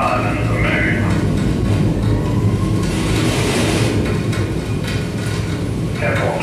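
Live improvised electroacoustic music built from field recordings and processed radio: a dense, steady low rumble with scattered clicks, and a wash of hiss about three seconds in.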